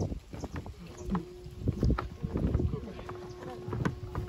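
Footsteps knocking on a wooden boardwalk, mixed with people talking, over a steady faint low drone.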